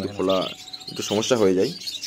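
Budgerigars chirping and chattering in the background, under a man's voice talking in two short stretches.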